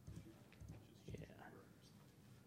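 Near silence with faint muttering, a man's voice speaking under his breath.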